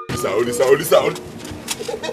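A person's voice making wordless sounds, with a few sharp clicks.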